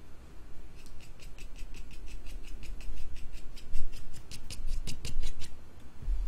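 Fingernail scratching the scratch-and-sniff patch on a trading card: a quick run of short scratches, about six a second, starting about a second in and stopping just before the end.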